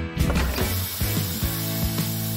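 A metal baking tray sliding and scraping out of an oven, with a few clicks, over light background music.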